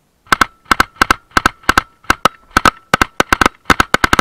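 Belt-fed machine gun firing close to the microphone in rapid short bursts of two or three shots, beginning about a third of a second in and continuing without pause.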